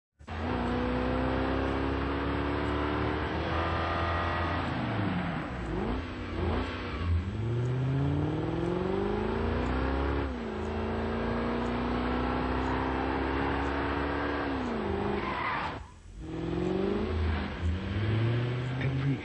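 Lexus SC coupe's engine accelerating hard, its pitch climbing and then dropping sharply at each gear change, then holding steady for a few seconds before winding down. There is a brief dropout near the end.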